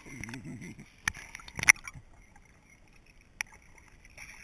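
Sea water sloshing and gurgling around an action camera's waterproof housing as it dips below the surface, heard muffled through the case. There are sharp knocks on the housing a little after one second in, the loudest about a second and a half in, and a single one near the end.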